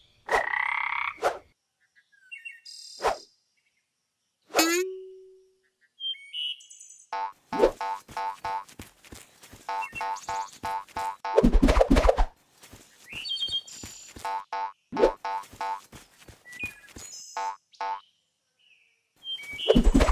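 Cartoon frog croaking sound effects in repeated rattling croaks, mixed with short pops, a falling glide about four seconds in, and heavier thumps near the middle.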